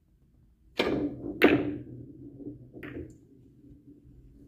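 A three-cushion billiard shot. The cue strikes the ball with a sharp click about a second in, then comes a louder click of ball hitting ball. The balls run on with a low rumble, and a lighter click of ball on ball comes near the end.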